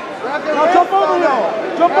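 Several voices shouting instructions over one another, with a call of "Jump" near the end.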